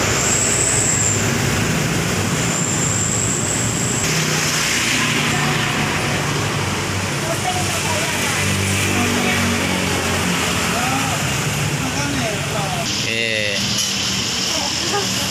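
Steady road traffic noise of passing vehicles, with faint voices in the background and a thin high whistle twice in the first few seconds.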